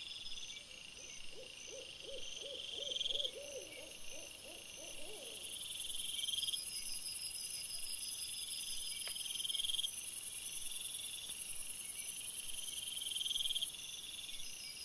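Night insects chirping in swells that repeat about every two seconds, with a steady, very high-pitched insect trill joining about halfway through. In the first five seconds a run of about ten short hooting calls, a little under two a second and rising slightly in pitch, comes from an unseen animal.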